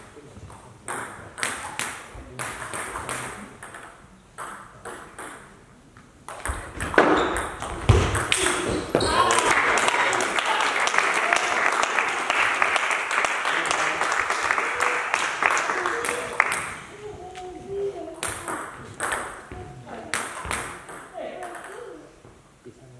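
Table tennis ball clicking off bats and table in quick strikes, then a few seconds of clapping and voices after the point ends. Near the end there are scattered ball taps again before the next serve.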